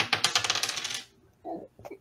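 Two six-sided dice rolled on a hard surface: a rapid clatter of small clicks that dies away after about a second as the dice come to rest.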